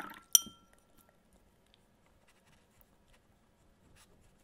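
Watercolour brush swished in a glass of rinse water, then one sharp, ringing clink as the metal brush taps the rim of the glass.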